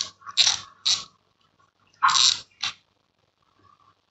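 Handling noise from a Shimano Stradic FL spinning reel as its spool is worked off the shaft: a few short scraping rattles in the first second and two more about two seconds in.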